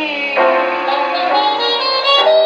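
1940s jazz ballad on a 78 rpm shellac record, played acoustically through an HMV 102 portable wind-up gramophone. A woman's sung note ends about half a second in, and the band's horns take over with a sustained chord.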